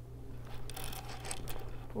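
Handling noise: a run of soft rustles and light knocks, starting about half a second in, as a lipstick is tucked into a quilted leather shoulder bag.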